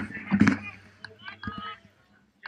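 Rumbling thumps on a bike-mounted action camera's microphone about half a second in, followed by fainter indistinct voices. The sound drops out near the end.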